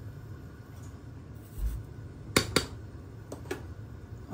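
A few sharp clicks of a spoon knocking against the metal cooking pan while the kheer is stirred: two loud ones close together about two and a half seconds in, then two fainter ones, over a low steady hum.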